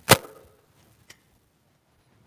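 A single sharp knock or clack with a short ringing tail, followed by a faint click about a second later.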